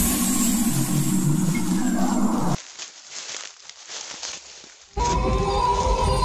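A loud animal roar sound effect lasts about two and a half seconds and cuts off suddenly. A quieter stretch of soft rustling follows, and eerie horror music with held tones comes back about five seconds in.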